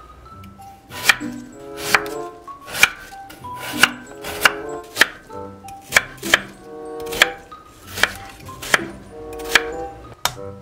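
Chef's knife chopping through a Korean radish onto a wooden cutting board: about a dozen firm cuts, roughly one a second, each ending in a sharp knock on the board.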